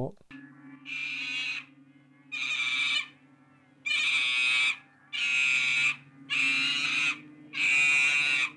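A newborn baby's crying from a horror film's soundtrack: six high-pitched cries, each just under a second, coming at an even rhythm about every second and a half. A low steady hum runs underneath.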